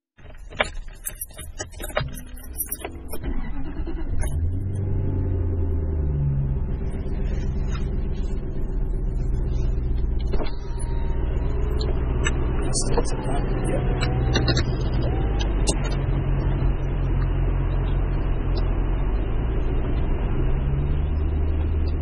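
Car engine heard from inside the cabin, running steadily as the car moves off slowly, its note rising briefly about six seconds in and again near the end. A few sharp clicks and knocks come in the first few seconds.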